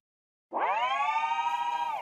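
A synthesized transition sound effect: after a moment of silence, a buzzy tone rich in overtones swoops up in pitch and then holds steady for about a second and a half.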